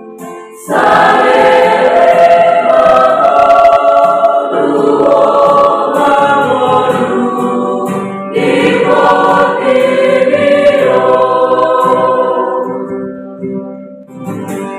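A mixed youth church choir of boys and girls singing a Christian song together. The voices come in loudly just under a second in, ease off for a moment past the middle, then swell again and fade near the end.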